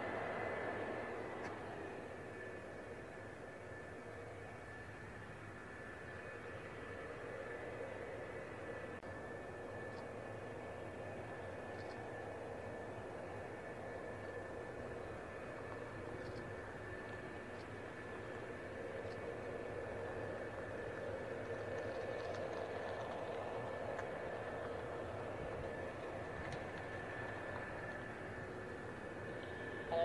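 Mitsubishi F-4EJ Kai Phantom II jets' J79 turbojet engines running steadily while the aircraft hold on the ground: a continuous jet whine with high, steady tones, swelling a little near the start and again past the middle.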